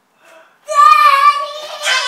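A young child's loud, long, high-pitched squeal of excitement, breaking out about half a second in and held.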